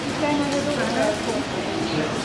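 Indistinct talk of people's voices in a tiled hall, with no words clear enough to make out.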